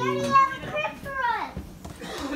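Excited young children's voices: a few short, high wordless calls that slide down in pitch, following an adult's drawn-out "ooh" that ends just after the start.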